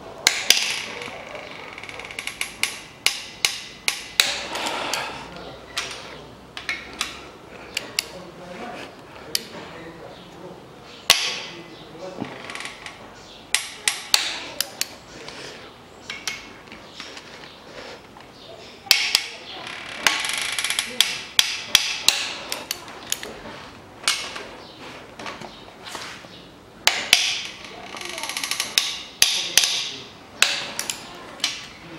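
Socket ratchet clicking in runs of quick metallic clicks with short pauses between, as cylinder head bolts are turned a further 90 degrees in the angle-tightening stage.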